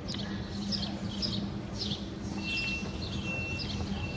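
A small bird chirping repeatedly, short high chirps that each sweep downward, about two a second, over a steady low hum. A thin steady high tone joins about halfway through.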